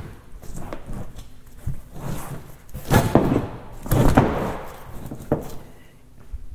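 A bulky carpet-faced truck bed mat being swung and set down into a pickup bed: scuffing and handling noise with a few dull thumps, the two heaviest about three and four seconds in.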